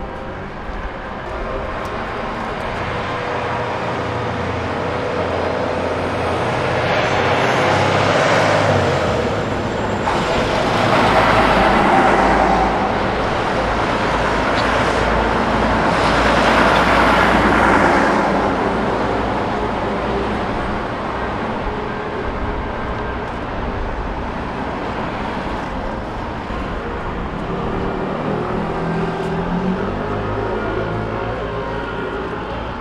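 Road traffic passing close by: vehicles go past one after another, swelling and fading, with the loudest passes about eight, eleven and sixteen seconds in, one of them a truck.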